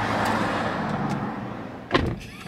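Steady hiss of noise inside a car cabin, fading slightly, with a sharp click at the very end.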